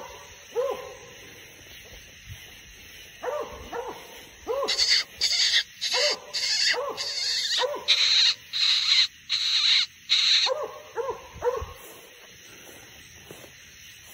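Redbone coonhound barking at a treed raccoon: short chop barks, about two a second, with a few scattered ones at first. In the middle of the barking comes a run of loud hissing rustles, also about two a second, louder than the barks.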